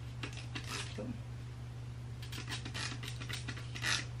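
Plastic trigger spray bottle pumped in quick squirts, each a short hiss of mist, in a run in the first second and another past the middle.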